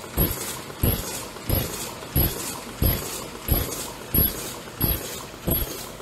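Paper cup forming machine running, its mechanism thumping in a steady cycle of about three strokes every two seconds, with a short high hiss at each stroke.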